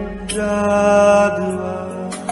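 Recorded devotional chant: long-held sung notes over a steady drone, the melody moving to a new note about a third of a second in and again just past a second.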